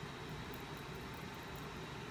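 Faint, steady background hiss and low hum: room tone, with no distinct sound events.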